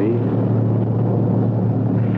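Steady low drone of a car driving, its engine running at an even speed: a radio-drama sound effect of the car on the road.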